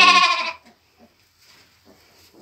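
A goat bleats with a wavering tone and breaks off about half a second in. After that there is only faint rustling in the straw.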